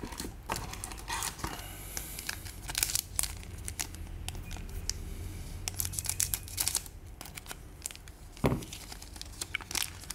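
Foil trading-card booster pack crinkling in the hands and being snipped open across the top with scissors: irregular crackling and rustling throughout, with one dull thump late on.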